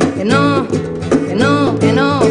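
Live acoustic song: a woman sings a long, sliding melodic line with no clear words over a strummed classical nylon-string guitar. Hand drums (bongos) keep a steady beat underneath.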